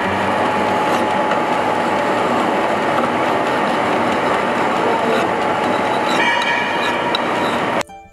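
Steady, loud machine-shop noise from metalworking machinery running, a dense continuous din with a faint constant hum. It cuts off suddenly near the end.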